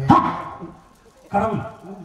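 A man's voice through a stage microphone giving two short, loud calls about a second and a quarter apart.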